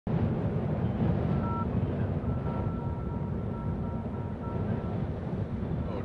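Wind buffeting an outdoor microphone: a steady low rumble with no launch sound yet, and a faint high steady tone sounding on and off through the middle.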